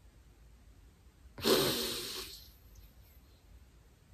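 One loud, breathy vocal outburst from a woman, muffled behind the hands held over her mouth, about a second and a half in, fading away over about a second.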